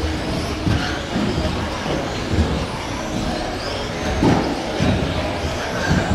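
Several 1/10-scale electric stock-class RC buggies racing together on a carpet track, their motors whining up and down in pitch as they accelerate and brake. There are irregular low thuds throughout.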